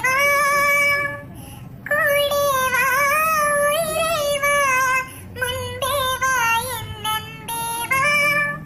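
A high-pitched, child-like voice singing a melody in held notes with vibrato, phrase by phrase, with a short break about a second and a half in.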